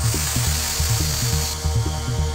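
1990s trance record played from vinyl: a steady four-to-the-floor kick drum and bassline, with a bright wash of high noise that comes in at the start and cuts off about one and a half seconds in.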